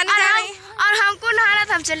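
A girl's high voice in sing-song speech. The first syllable is drawn out on one pitch for most of a second, then several short syllables follow.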